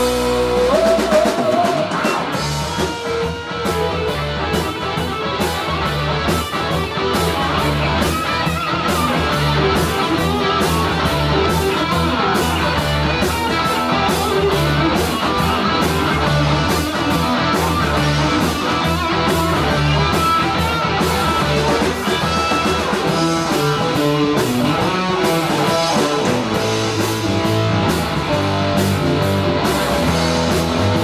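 Live rock band playing loudly: electric guitars over a steady drum-kit beat.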